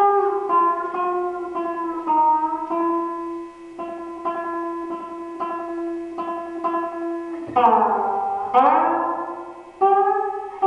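Solo guitar: single plucked notes picked over a held low drone note, then two loud strummed chords about a second apart near the end, their pitch bending down as they ring.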